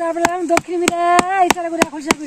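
A stick beating a woven bamboo winnowing tray (kula) in a quick, steady rhythm of about four to five sharp knocks a second, under women's repetitive sing-song chanting. The beating and chant are a village ritual to drive off ghosts.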